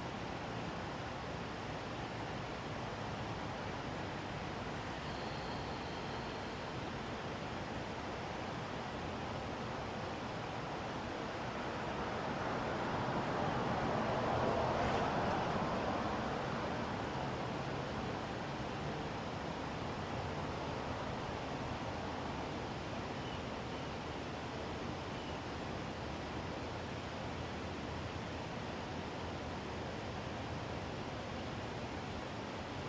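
Steady outdoor background noise, with a car passing on the street that swells to its loudest about halfway through and then fades away.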